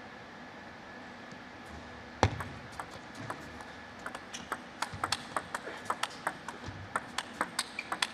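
Table tennis ball in play: a serve about two seconds in, the loudest single click, then a long rally with the celluloid-type ball clicking sharply off bats and table in quick alternation, dominated by heavy topspin exchanges.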